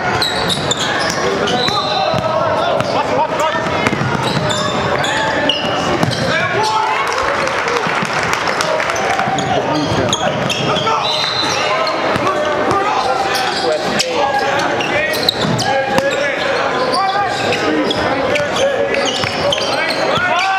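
Live gym sound from a basketball game: a ball bouncing on the hardwood court among indistinct voices of players and spectators, echoing in a large gym.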